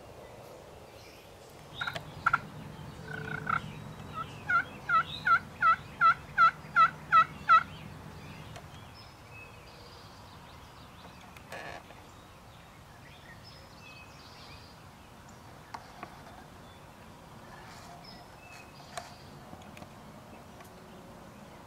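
Turkey pot call worked with a wooden striker, imitating a hen turkey's yelps to call in gobblers: a few short strokes, then a run of about ten evenly spaced yelps that grow steadily louder. Faint songbird chirps follow.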